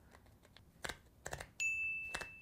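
A few small plastic clicks as a 3D-printed headphone clip is pushed into place, then, about one and a half seconds in, a single high ding that rings on steadily.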